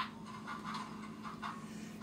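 Model steam locomotive's Tsunami2 sound decoder chuffing softly at a slow, even pace, a few chuffs a second, over a steady low hum. The decoder is set for an articulated chuff cadence, eight chuffs per wheel revolution, with no wheel slip.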